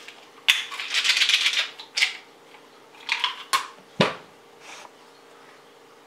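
A small plastic pill container being handled and opened: a rattling, scraping burst lasting about a second, then a few sharp clicks and a single knock about four seconds in.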